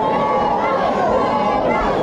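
Crowd of spectators: many voices talking and calling out at once, steady in level, with no single voice standing out.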